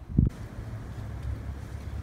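Wind buffeting the microphone: a steady low rumble, with one short low thump just after the start.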